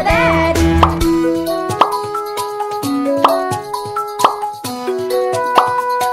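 Cartoon plop sound effects, about five short rising bloops roughly a second apart, as fruits and vegetables drop into place, over a light plinking children's tune.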